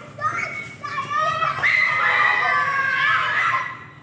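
Children's voices shouting and calling out over a football game, with one long high-pitched shout in the middle.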